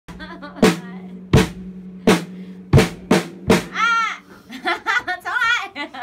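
Acoustic drum kit struck with six single, uneven hits in the first three and a half seconds, each ringing out, over a steady low tone. In the second half the drumming stops and a woman laughs and vocalizes.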